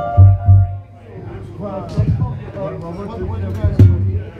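Musicians between numbers on a club stage: a held chord dies away in the first second, two loud low thumps come close together near the start, then voices talk over room chatter, with a sharp knock near the end.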